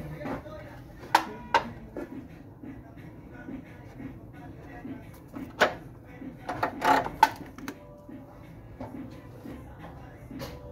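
A hollow resin bust shell being handled on a workbench: several sharp knocks and rattles, two about a second in and a louder cluster around six to seven seconds in. A low murmur of voices and music runs underneath.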